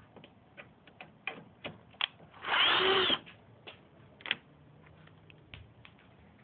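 A socket on a long extension working a headlight mounting screw loose: scattered sharp clicks, and a short whir of a power driver, under a second long, about two and a half seconds in.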